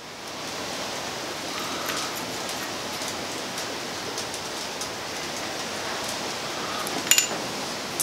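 Steady hiss of background shop noise, with faint small clicks and taps of plastic handling as a spirit-level vial is pressed into a plastic center-finder body with a wooden stick. A sharper click with a brief ring comes about seven seconds in.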